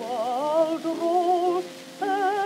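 Contralto voice singing with wide vibrato to piano accompaniment, on an acoustically recorded 1920s 78 rpm disc with surface hiss; the voice pauses shortly before the end.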